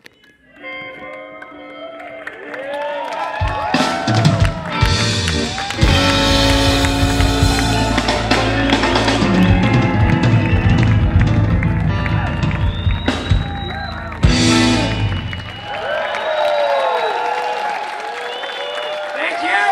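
Electric blues band playing live: electric guitar leads with bent notes, and bass and drums come in a few seconds in. The full band stops about fifteen seconds in, leaving lighter guitar and shouts from the crowd.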